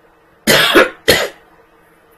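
A man coughing twice in quick succession: a longer cough about half a second in, then a shorter one just after.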